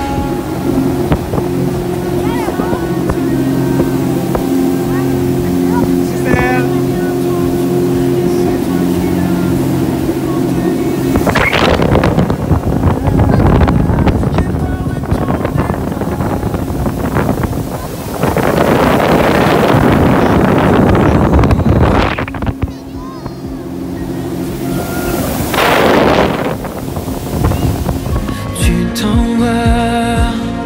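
Motorboat under way, recorded aboard: a steady engine drone, then heavy wind buffeting the microphone in long gusts through the second half.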